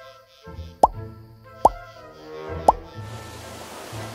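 Background music with three cartoon plop sound effects, each a quick upward-gliding bloop, about a second apart. Near the end a rushing hiss of water begins.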